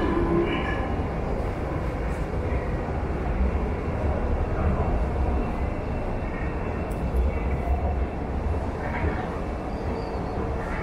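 Paris Métro trains at an underground platform: a steady low rumble of running trains.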